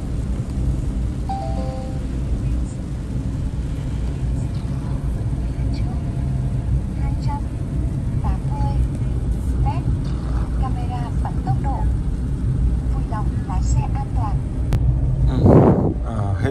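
Steady road and tyre noise inside the cabin of a VinFast VF3, a small electric car, driving on a wet road, with no engine note. There is a brief louder swell near the end.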